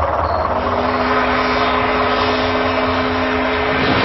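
Aircraft engines running steadily in flight: a loud, even rumble with a constant hum.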